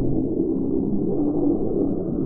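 Calls of black-headed gulls and the surrounding outdoor sound, slowed down tenfold with the 240 fps footage, so the calls are drawn out into low, sliding, moaning tones over a dull rumble.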